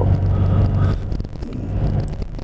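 Low engine and road rumble inside a car's cabin while driving, easing a little in the second half.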